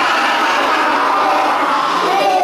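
Many children's voices singing together in a loud, steady mass of overlapping voices.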